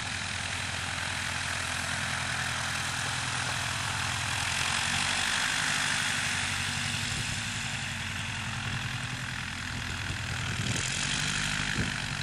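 Bearhawk light aircraft's piston engine and propeller running steadily at low power on the ground as the plane moves past close by, loudest about five to six seconds in.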